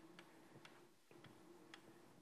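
Chalk writing on a blackboard, faint: several sharp chalk taps and short scratchy strokes as letters are written.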